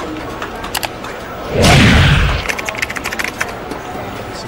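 Sound effects of a logo-reveal animation: a run of sharp clicks over a steady low hum, then about one and a half seconds in a loud boom with a rushing noise lasting under a second, followed by more clicks.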